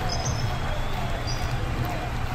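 Basketball shoes squeaking on a gym floor: several short, high chirps as players cut and stop.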